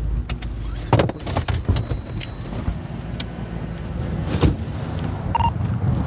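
Patrol car driving, heard from inside the cabin: a steady engine and road rumble with scattered knocks and rattles, and a short beep about five seconds in.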